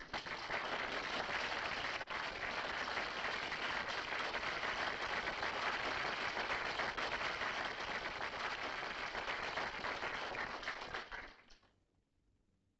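An audience applauding, steady dense clapping that dies away about a second before the end.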